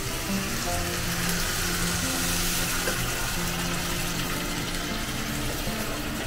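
Water poured from a bottle into a hot pan of frying onion, bell peppers and masala, the pan sizzling steadily. Soft background music with held notes plays underneath.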